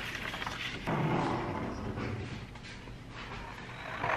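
A sheet of paper being handled and slid across a painted wooden dresser top: a soft, uneven rustling, a little stronger about a second in.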